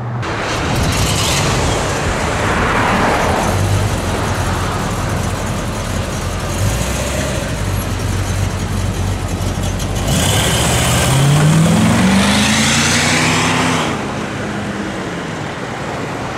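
Vintage Cadillac Eldorado's V8 engine running at low speed close by, then accelerating as the car pulls away about ten seconds in, its pitch rising and then levelling off, over road traffic noise.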